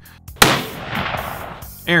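A single shot from a Desert Tech SRS Covert bullpup rifle chambered in .300 Win Mag, fired without a muzzle brake. It is a sharp crack about half a second in, followed by about a second of fading echo.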